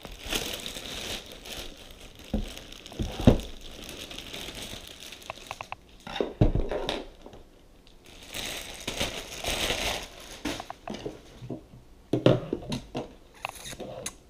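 Clear plastic bag crinkling and rustling in irregular spells as it is pulled off a boxed power tool, with a few knocks of hard plastic against the table.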